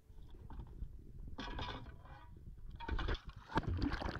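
Faint water sloshing against a boat's hull and a hanging anchor, in irregular swells.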